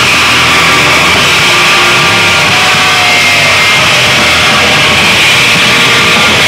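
Loud live punk/metal band playing a dense, chaotic, noisy passage of distorted guitars and drums, heard through a camcorder microphone, with a few held high tones, one sliding slightly down about three seconds in.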